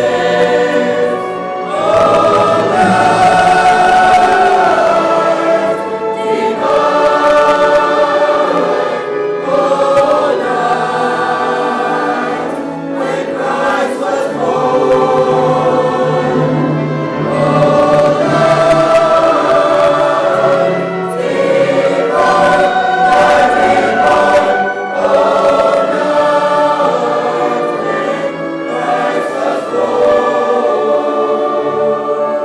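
A large mixed choir of high-school singers singing a Christmas choral piece in sustained, swelling phrases, with brief breaths between phrases.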